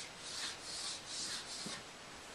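Chalk scraping on a blackboard in a run of five or six quick, scratchy strokes, as a line is drawn under written words.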